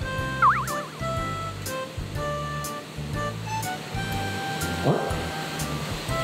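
Background music with a steady beat and short repeating notes. About half a second in, a short warbling sound effect is the loudest thing.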